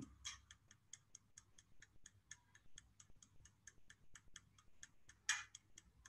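Pencil point working on paper in quick short strokes: faint, rapid ticks and scratches, about seven a second, with one louder scratch about five seconds in.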